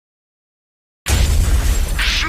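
Silence for about a second, then a sudden loud crash-like burst of noise over heavy deep bass: an intro sound effect.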